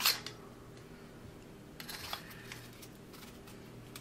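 Beretta 1301 Tactical shotgun barrel being slid onto its magazine tube: a sharp metal click as the parts meet, then faint metal-on-metal scraping and small clicks about two seconds in.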